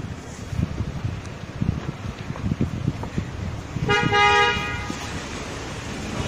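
A car horn honks once, briefly, about four seconds in, over the low rumble of street traffic.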